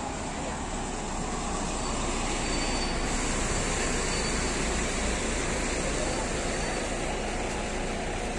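Steady street traffic: car engines and tyres on a city road close by, a continuous low rumble that grows slightly louder after about two seconds.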